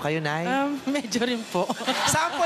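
A person's voice making drawn-out sounds that waver in pitch, with no clear words.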